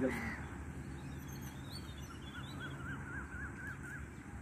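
Birds calling: a few high chirps about a second in, then a run of quick, repeated wavering notes through the second half, faint over a low steady rumble.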